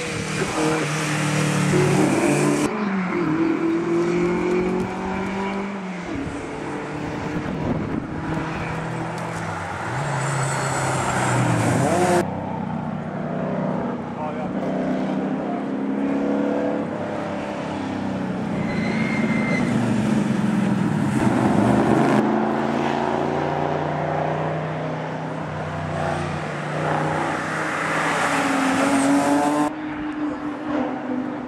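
Rally cars driving past one after another at speed, their engines revving up and falling back through gear changes. It comes in several short clips with abrupt cuts between cars.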